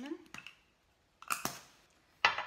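Plastic spice jars being handled on a kitchen counter: a couple of light clicks, then a short sharp clatter about a second and a quarter in.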